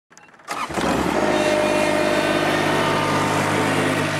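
Toro 3280-D ride-on mower's diesel engine running steadily, its sound starting about half a second in.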